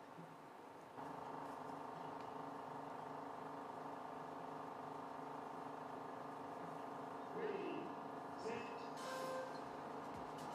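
Steady background hum of a regatta course. Short voice calls from the starter come over the loudspeaker near the end, followed by a brief tone of the start signal that sends off the K1 kayaks.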